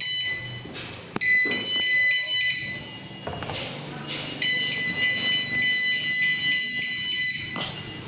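A high-pitched electronic buzzer tone sounding in three long stretches, with a sharp click about a second in.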